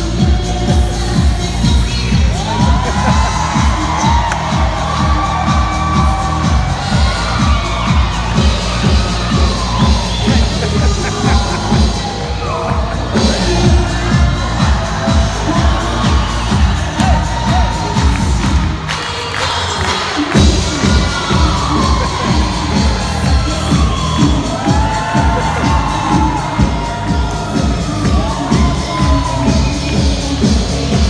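Music with a steady thumping beat played over the ring, with the cheering and shouting of an audience, children's voices among it. The beat cuts out for about a second about two-thirds of the way through.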